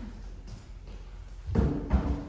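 A wooden chair set down on a wooden stage floor: a couple of heavy thumps about one and a half seconds in, with a short steady tone ringing on after them.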